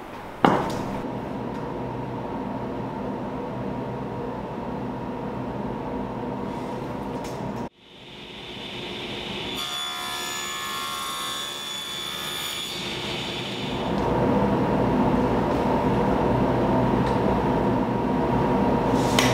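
Table saw running with a steady motor hum, and for a few seconds in the middle a higher whine as the blade cuts through a plywood panel. The sound breaks off abruptly partway through.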